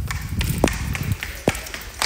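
Footsteps of heeled sandals on a hard, glossy floor: sharp clicks of the heels about one every second, over a steady hiss.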